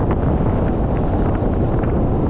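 Loud, steady wind rush buffeting the microphone of a pole-mounted camera carried by a downhill skier, with faint, irregular scraping of skis over packed snow.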